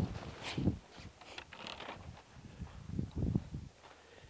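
Footsteps on grass with irregular thuds, and the rustle and knock of clothing and fishing gear (rod, landing net, rod tube) as a man walks.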